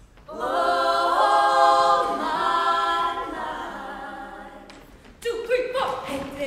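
Women's choir singing a cappella: a loud held chord comes in just after the start and slowly fades, and a new phrase starts near the end.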